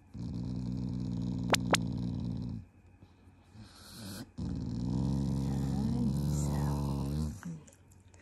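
Black Shiba Inu growling with bared teeth in two long, low growls, one of about two and a half seconds and one of about three seconds after a short pause. It is an affectionate growl, not an angry one.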